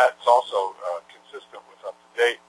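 A man's voice lecturing, heard over a narrow, radio-like line with a faint steady hum beneath it.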